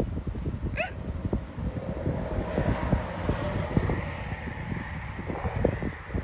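Wind buffeting the phone's microphone in an irregular low rumble, with a short high chirp about a second in.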